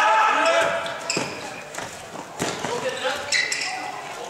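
Voices calling out in a sports hall, with a handball bouncing on the court floor: sharp thuds about one second and two and a half seconds in.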